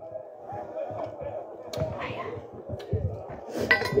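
Faint voices in the background, with a few soft knocks and a clink from a drinking cup being handled.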